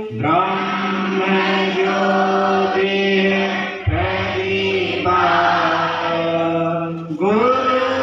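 Slow, chant-like singing in long held notes, in phrases of about three to four seconds with a brief break between them.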